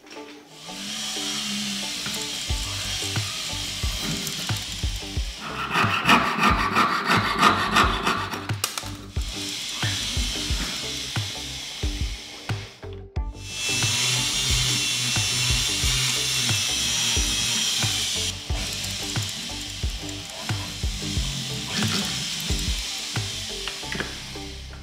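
Hand tool working thin metal sheet at a wooden bench pin: rapid scraping strokes of sawing or filing, densest a quarter to a third of the way in, over background music.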